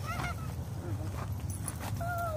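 German Shepherd puppy giving one short, high whine early on while it tugs on a training rag, over a steady low rumble and a few faint clicks.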